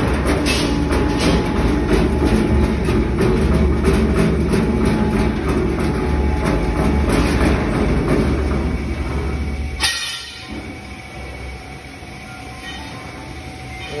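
Ribbon blender mixer running: its electric motor drives a large belt pulley and gearbox with a steady low rumble and a rapid rattle. About ten seconds in there is a sharp click, the rumble drops away, and quieter workshop noise remains.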